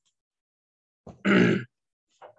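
A man's short, grunt-like vocal sound about a second in, after a second of silence.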